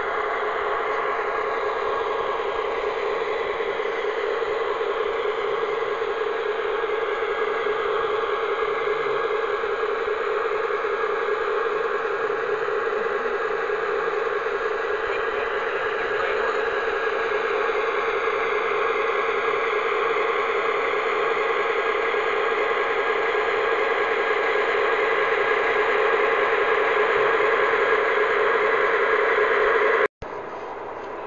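O-scale model of an Electroputere A-558 diesel locomotive running: a steady whir with a constant hum, growing slightly louder near the end.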